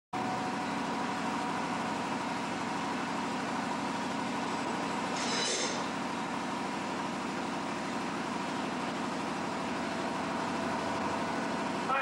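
Steady, even background hum with a few faint steady tones, and a brief higher hiss about five seconds in.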